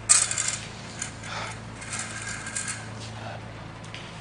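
Small metal objects clinking and jingling: a bright clattering burst right at the start, then two more rounds of clinking about a second and two seconds in, over a faint steady hum.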